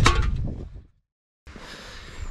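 The last of a spoken word fading out, then a moment of dead silence at an edit cut, then faint, steady background noise.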